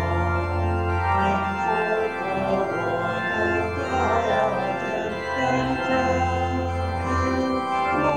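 Church organ playing slow, sustained chords that change every second or two.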